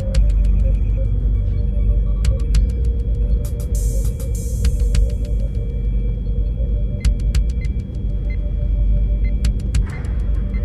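Early-nineties ambient electronic music: a dense deep bass drone under a steady pulsing mid-range tone, with scattered sharp clicks and a brief hiss wash about four seconds in.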